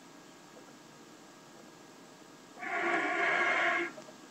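Beginner playing one breathy note on a concert flute, an attempt at a G. It starts about two and a half seconds in and is held for a little over a second.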